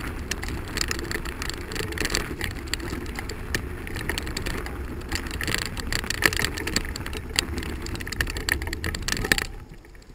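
Bicycle rolling over a gravel trail: tyres crunching on loose stones, fast rattling from the bike, and a low rumble. About nine and a half seconds in it suddenly goes much quieter as the tyres reach smoother pavement.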